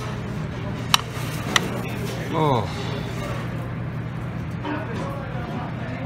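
Restaurant dining-room background: a steady low hum with voices and music. About a second in come two sharp, ringing clinks of tableware, a little over half a second apart. Midway a voice slides down in pitch.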